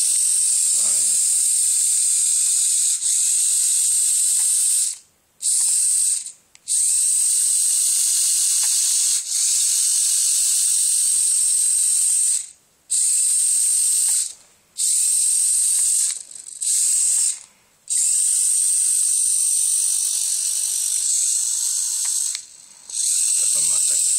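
Hobby servo motors driving a four-wheeled mecanum robot, a steady high-pitched whir that stops dead and starts again about seven times as the robot halts and sets off between moves.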